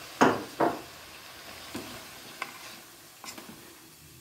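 A wooden spoon stirring fusilli pasta in an aluminium pot, with two strong scrapes in the first second followed by a few faint knocks.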